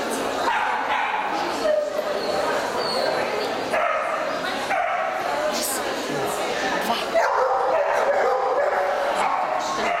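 A dog yipping and whining again and again, over people talking in a large hall.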